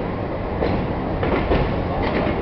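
Bangladesh Railway passenger train running through a station, heard from inside the carriage: a steady low rumble with a few wheel clacks over the rail joints about halfway through.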